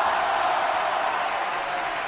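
A steady rushing hiss from a sound effect under an animated logo intro, with no tone or rhythm, easing slightly in level.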